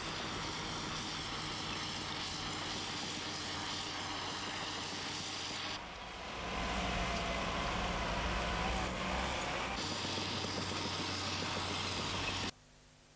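Diesel engines of heavy earth-moving and refuse vehicles (garbage trucks, a wheel loader, a Caterpillar bulldozer) running steadily. The sound changes abruptly twice. In the middle stretch a heavier low rumble comes with a wavering whine.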